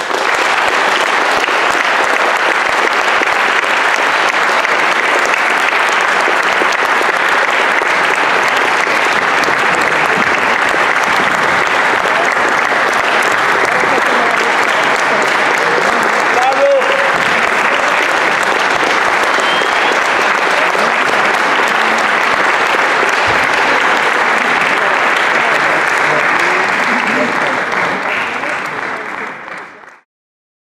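Audience applauding steadily, fading out over the last few seconds.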